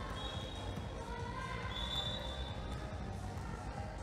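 A basketball being dribbled on a wooden gym floor during play, under the chatter of voices in the hall.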